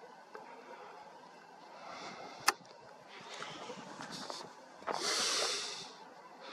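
Handling noise from a camera on a tripod being adjusted: a single sharp click about two and a half seconds in, faint rustling, and a brief rush of noise lasting about a second near the end.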